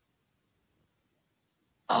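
Near silence, with no sound from the course, until a man's voice starts speaking near the end.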